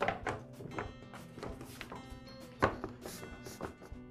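Hard plastic impeller-housing halves of a Troy-Bilt backpack leaf blower knocking and clicking together as they are fitted over the blower tube, a handful of sharp knocks with the loudest about two and a half seconds in. Soft background music runs underneath.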